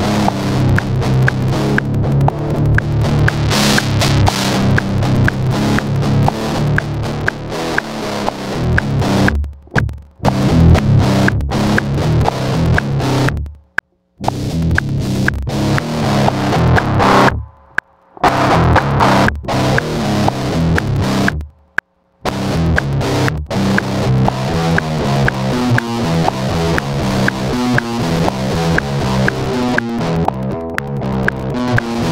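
Electric guitar riff (ESP LTD EC-256) played back through the Mercuriall Metal Area MT-A high-gain distortion plugin: a rhythmic chugging metal riff with a few brief stops. Its tone shifts as the plugin's level and distortion knobs are turned.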